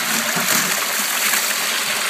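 Steady rush of water from bilge pumps pouring out of a ribbed hose into a homemade highbanker's metal header box and washing down the sluice.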